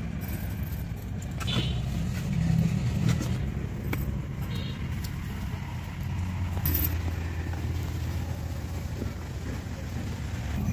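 A steady low rumble with a few light knocks of a clay lid and ladle against a clay cooking pot.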